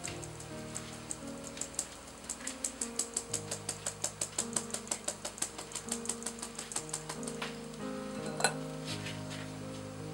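Fine metal mesh sieve being shaken over a glass bowl to sift cake flour, giving quick even rasps about five a second for several seconds, then one sharper click near the end. Background music plays throughout.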